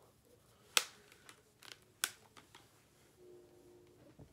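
Handling of makeup tools, a plastic compact and a brush: two sharp clicks about a second and a quarter apart, with lighter taps and ticks between.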